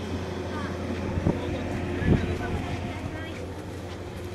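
Outdoor crowd ambience at a car show: distant voices over a steady low hum, with wind on the microphone. Two light knocks come about a second and two seconds in.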